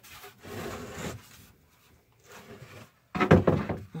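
A few sharp wooden knocks and clatter from lumber boards being handled and set down, after several seconds of faint rustling.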